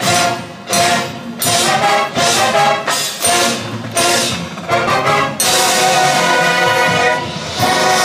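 High school marching band's brass and percussion entering loudly all at once, punching out a string of short accented chords about every two-thirds of a second, then holding a long, full chord from about halfway through.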